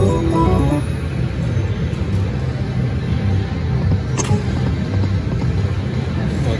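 Eureka Reel Blast slot machine: a short jingle of quick stepped notes for a small win ends about a second in. A steady low rumbling follows while the reels spin again, with one sharp click about four seconds in.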